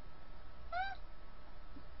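A single short, high-pitched call that rises and then falls in pitch, about a second in, over a steady low room hum.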